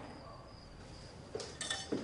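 Faint room tone, then from about a second and a half in a few light clinks and knocks of kitchen dishes.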